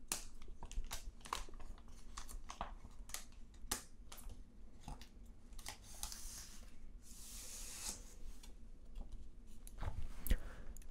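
A thin plastic comic-book bag crinkling and clicking as it is opened and handled, with a longer rustling slide about six to eight seconds in as the comic is drawn out of the bag.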